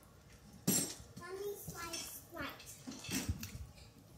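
A plastic water bottle being handled, with a sharp crinkle just under a second in, and faint voice sounds, including a child's voice in the background.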